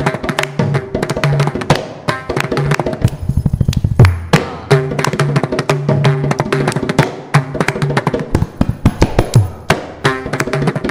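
Mridangam and kanjira playing a percussion solo (tani avartanam) of a Carnatic concert: fast, dense drum strokes with ringing pitched strokes and occasional deep sliding bass strokes, the loudest about four seconds in.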